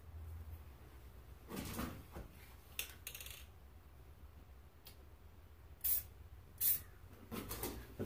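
Aerosol spray-paint can giving several short hisses, the two sharpest near the end, as paint is sprayed through mesh netting draped over a rifle to lay a camouflage texture pattern. Soft handling noises of the netting come between the hisses.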